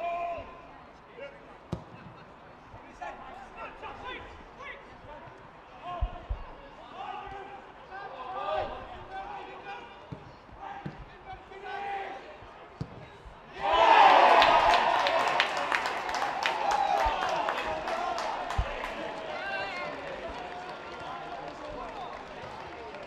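Live match sound from a football ground: scattered shouts from players and spectators and occasional thuds of the ball being kicked. About fourteen seconds in, a small crowd bursts into cheering and clapping as a goal is scored, and this slowly dies down.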